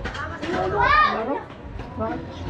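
People talking at close range. About a second in, a loud, high-pitched voice rises and then falls in a brief call.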